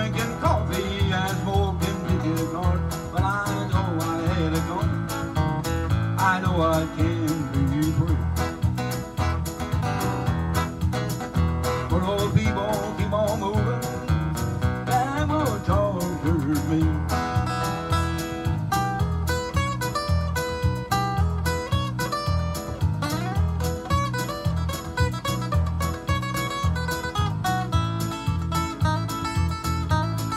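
Acoustic guitar playing an instrumental break in a steady country rhythm. A bending lead melody rides over the strumming through about the first half, and the picking turns busier in the second half.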